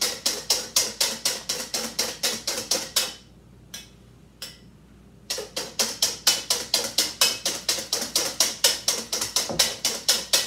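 Wire whisk beating heavy cream in a stainless steel bowl by hand, the wires striking the bowl in a fast, even rhythm of about five strokes a second. About three seconds in the whisking stops for about two seconds, with a single tap or two, then picks up again at the same pace.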